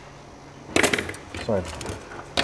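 A brief clatter of laptop parts being handled during dismantling, about a second in, followed by a spoken word.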